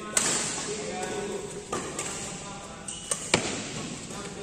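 Badminton rackets hitting a shuttlecock during a doubles rally: several sharp hits about a second apart, the loudest near the end.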